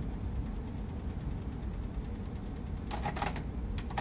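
Cassette deck of a JVC RV-NB1 boombox rewinding a tape with a low, steady whir. About three seconds in comes a short cluster of mechanical clicks from the deck's transport buttons.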